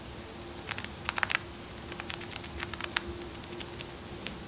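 Chipmunk chewing pomegranate seeds: a quick, irregular run of crisp little crunching clicks, densest about a second in.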